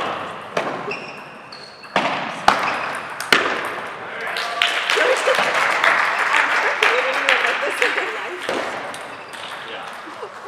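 Table tennis balls clicking sharply off paddles and tables in a large gymnasium: a few separate knocks in the first three and a half seconds, then a swell of voices and many quicker clicks from the surrounding tables through the middle, dying down near the end.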